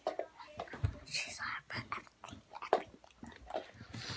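Soft whispering close to the microphone, with quick, irregular clicks and taps as a small cardboard box and other small items are handled.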